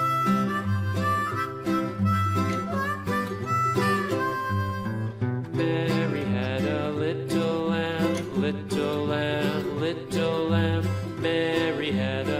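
Background music that starts suddenly: a melody line over a steady bass, the arrangement growing fuller about five and a half seconds in.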